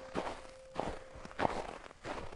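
Slow, even footsteps, about one step every half second or so, with a held piano note fading out in the first part.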